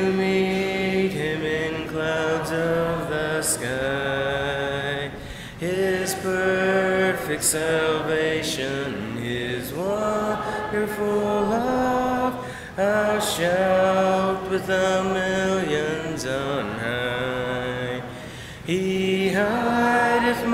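Church congregation singing a slow hymn: lines of long, held notes, with short breaks between the lines.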